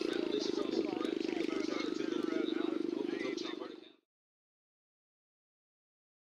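Indistinct arena ambience: distant, unintelligible talk over a steady low hum, with a few faint clicks. It fades out about four seconds in, leaving dead silence.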